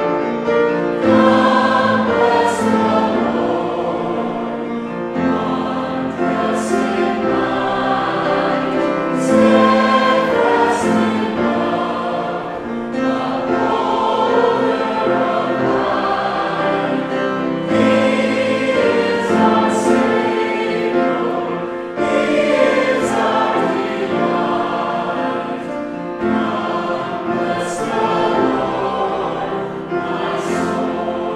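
A church congregation singing a hymn together, many voices holding the notes in phrases of a few seconds.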